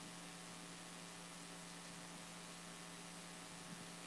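Steady, faint electrical mains hum with a light hiss from the sound system or recording chain, holding level throughout.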